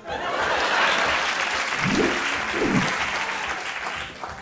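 Studio audience applauding, starting abruptly and slowly fading, with a couple of short calls from the crowd about halfway through.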